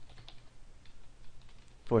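Computer keyboard being typed on: a quick, irregular run of light key clicks as a word is typed out, over a faint low hum.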